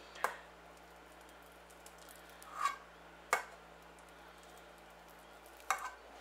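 A metal spoon scraping and tapping against an enamel bowl as it cuts through a thick mash of potato and tuna: a few faint, sparse clicks, the sharpest a little past three seconds in, over a low steady hum.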